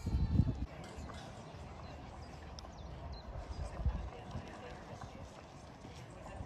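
Outdoor café terrace ambience: indistinct chatter of people at the tables, with irregular footsteps on a gravel path and a few low thumps at the start and again about four seconds in.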